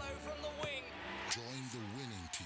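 Advert soundtrack music that breaks off with a single sharp knock about a second and a half in, followed by a man's wordless voice sliding down and up in pitch.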